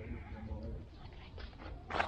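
A dog pushing through a thuja hedge and turning away, with rustling and scuffing that thickens from about halfway in. A low rumble from the camera on the dog's back runs underneath.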